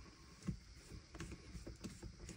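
Faint, scattered small clicks and taps of a small screwdriver driving the heatsink screws over the CPU of a Dell Latitude 7320 laptop.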